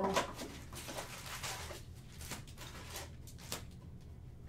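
Foil card pack and cardboard box being handled and opened: irregular crinkling, rustling and scraping, with a sharper crackle just after the start and more near the middle and about three and a half seconds in.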